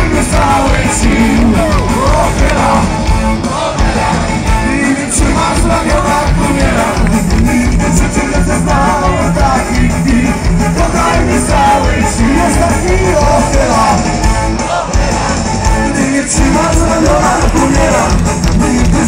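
Live rock band playing loudly with a singer, heard from within the audience at an outdoor concert.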